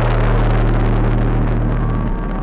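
A sudden loud explosion sound effect, a burst of noise that fades over about a second and a half, mixed over the song's sustained synth and bass notes.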